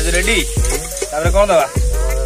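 Background music with a heavy bass beat, about two beats a second, and a singing voice. Underneath it, onions sizzle as they fry in an aluminium pot.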